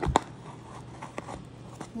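Handling sounds as a piece of a layered cookie-and-brownie bar is picked up from the pan: one sharp tap just after the start, then a few faint clicks.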